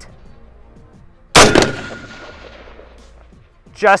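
A single shot from a Daewoo K1 carbine (5.56 mm) fired from the prone position: one sharp crack about a second and a half in, with a tail that dies away over more than a second.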